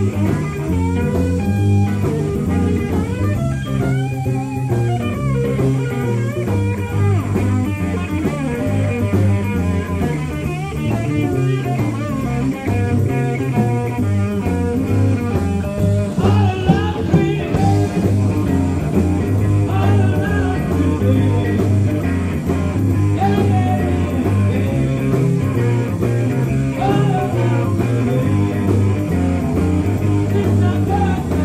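Live blues band playing: electric guitars over bass guitar and drums, with bending guitar lines above a steady bass pattern.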